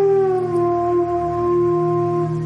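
Bansuri (bamboo transverse flute) holding one long note that slides down a little at its start, over a steady low drone.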